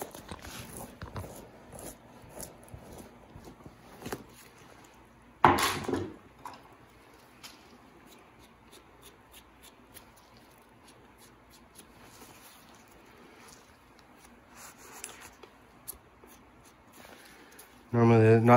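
Knife working on a lynx hide over a fleshing board: quiet scraping and small clicks as the hide is cut and handled around the head and ears, with one louder knock about five seconds in.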